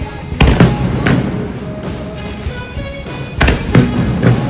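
Fireworks going off at ground level, loud sharp bangs in a cluster about half a second in, another around a second, and a pair near the end, heard over music.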